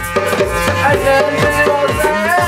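Group jam music: hand-played djembe strokes over a drum beat with deep kick hits a few times a second, and a sustained melody line on top.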